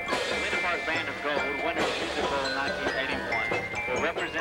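High school marching band playing on the field, with held notes, mixed with the voices of spectators in the stands.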